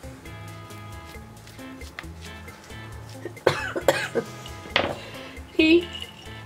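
Soft background music playing steadily, with a woman coughing a few short times in the second half. The coughs come from a lingering viral cold.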